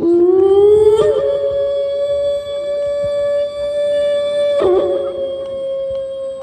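A woman's voice singing one long, high, held note through a microphone in a northern throat-singing piece. The note starts suddenly, slides upward, steps higher about a second in and then holds steady, with a brief catch to a lower pitch near the end.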